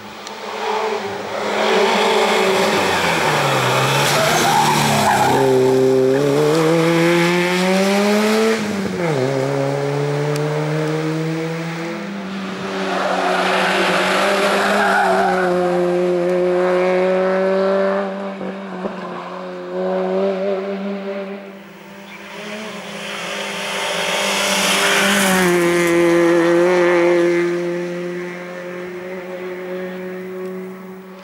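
Hill-climb race car's engine running at high revs, the pitch dipping and climbing back twice in the first ten seconds through gear changes, then held high and steady as the car pulls up the road.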